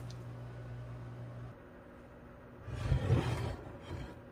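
A low steady hum that stops about a second and a half in. Then, near three seconds in, a loud rumbling scrape lasting under a second as a glass baking dish is slid across the counter.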